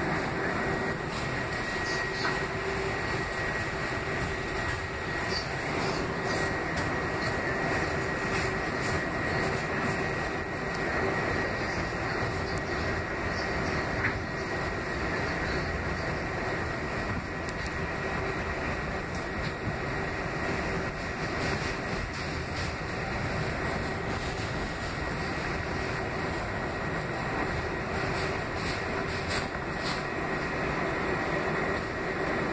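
Kawasaki R188 subway car running on elevated track, heard from inside: steady wheel and running noise with a thin, steady high whine and a lower hum.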